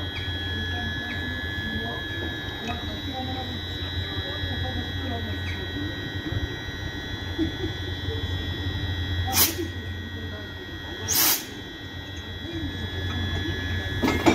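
Electric locomotive standing under the catenary with its electrical equipment and cooling running: a steady hum with a high whine over it. Two short, sharp hisses come about two seconds apart in the second half.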